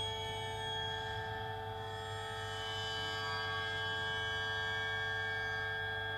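A sustained drone of several steady, ringing tones layered together, unchanging and without attacks, over a low hum, from the performance's guitar-and-live-electronics and prepared-drum setup.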